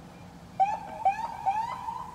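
Police siren sounding short rising whoops, three in quick succession about half a second apart, then a longer one that rises and holds as it fades.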